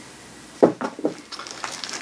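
Unboxing items being handled: a single sharp tap about half a second in, then light clicks and rustling as paper brochures are picked out of a foam packaging tray.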